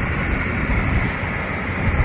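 Wind blowing on the microphone: a steady rushing noise, heaviest in the low end, with no distinct events.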